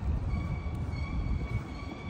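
Low rumble of city street traffic, with a faint, high, steady whine that comes in about a quarter second in.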